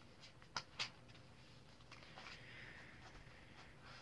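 Near silence in a small room, with two faint ticks about a quarter second apart just after the start and a soft rustle in the middle: quiet handling sounds while a Bible passage is being looked up.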